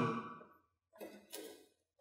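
Near silence: room tone, broken by two faint, brief sounds about a second in.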